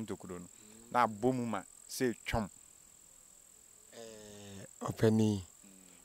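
Crickets trilling in a steady, high-pitched tone, with men talking over it at times.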